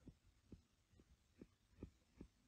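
Near silence broken by faint, short, low thumps, about four in two seconds, from a stylus pressing and stroking on a tablet screen as a curve is drawn.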